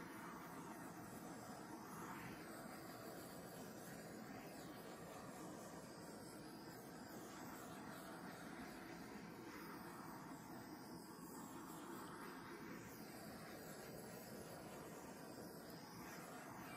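Faint, steady hiss of a small handheld butane torch being passed over a wet acrylic pour painting.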